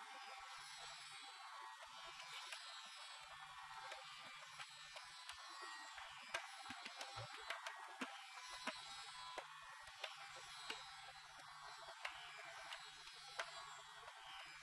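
Quiet tanpura drone with its buzzing tone, and soft tabla strokes keeping the teental cycle between vocal phrases of a Hindustani khyal.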